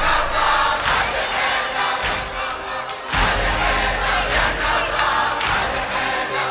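A crowd of men's voices chanting together over a strong beat that strikes about once a second, as in a recorded Shia latmiya (noha).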